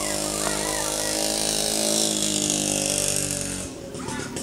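A small motorcycle engine running steadily, its pitch sinking slightly as it goes, then cutting off abruptly near the end.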